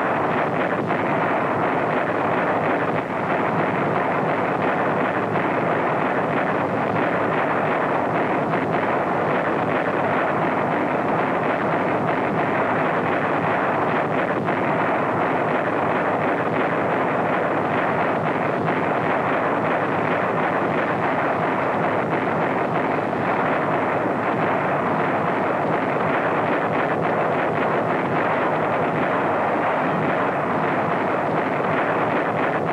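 A steady, loud rushing roar that goes on without pause and has no separate blasts or impacts.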